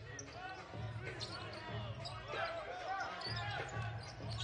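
Basketball being dribbled on a hardwood court: repeated low bounces, with the background of a sparsely filled arena.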